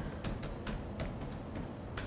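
Computer keyboard being typed on: a quick, uneven run of key clicks.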